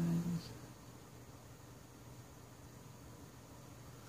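A man humming one low, steady note that stops about half a second in, followed by faint room tone.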